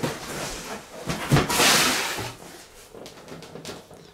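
Lid of a large cardboard box being lifted off: a knock about a second in, then a loud rustling slide of cardboard, then a few light taps.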